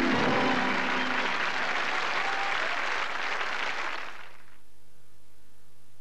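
Studio audience applauding, with the show's closing music under it at first, fading out about four seconds in and leaving only a faint steady low hum.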